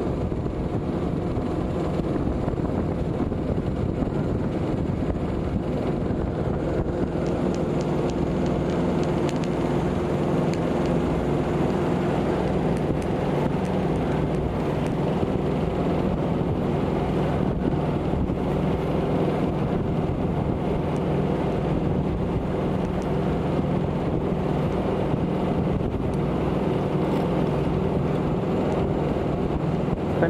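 Motor cruiser's engine running steadily at cruising speed, a constant drone, with wind buffeting the microphone.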